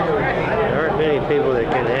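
Speech only: people's voices talking throughout, with nothing else standing out.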